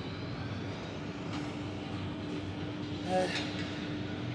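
Gym cable pulldown machine in use: a steady low rumble with a faint steady hum from the cable, pulleys and weight stack moving through the reps, and one short pitched sound about three seconds in.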